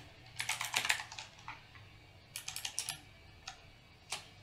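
Keystrokes on a computer keyboard in a few short bursts, typing a word correction into a document.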